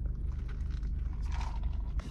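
Steady low hum of a car running, heard from inside the cabin.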